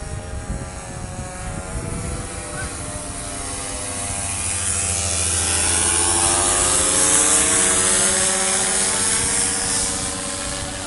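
Paramotor engine and propeller droning in flight overhead, growing louder to a peak about seven or eight seconds in and then easing off, its pitch rising and falling.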